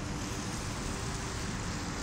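Steady background road traffic noise: an even, constant rush with no separate events standing out.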